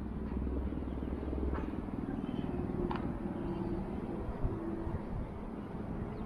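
Steady low rumble of distant road traffic, with a couple of faint short high sounds.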